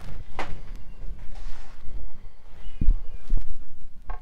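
Handling noise as a vinyl LP is set down onto a turntable platter: irregular low thumps and bumps with a few sharp clicks, the heaviest knocks near the end.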